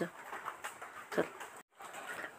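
Quiet speech: two short words spoken softly in a Hindi voiceover, one at the start and one about a second in, with a brief dropout to silence near the end.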